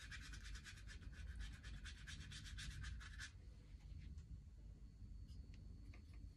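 Watercolour paintbrush scrubbed rapidly back and forth on watercolour paper, blending wet paint, about eight strokes a second; the brushing stops about halfway through.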